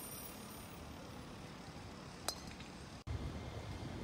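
Faint open-air ambience broken by a single sharp clink a little over two seconds in, a golf club striking a ball at a driving range. Just after three seconds the sound cuts abruptly to a low, steady rumble of a Keikyu train running on an elevated viaduct.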